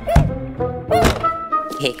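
Cartoon soundtrack music with two sharp thuds as sound effects, one right at the start and one about a second in, each followed by a short falling tone.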